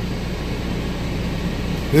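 Steady low rumble and hum inside a big truck's cab.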